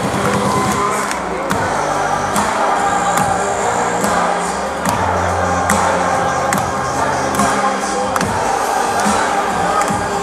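Live electronic dance music from a DJ set, played loud over a large sound system and recorded from within the crowd. It has deep sustained bass notes and a sharp hit about every second.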